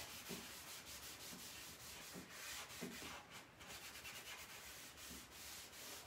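Cotton rag rubbing back and forth over a bare oak tabletop, wiping back wet white gel stain. The strokes are faint, with a brief pause a little past halfway.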